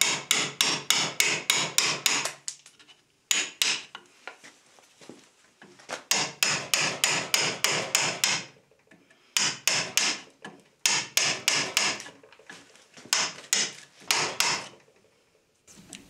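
Hammer tapping a wood chisel in quick runs of sharp blows, about four a second, with short pauses between runs: chisel work roughing waste wood off a board.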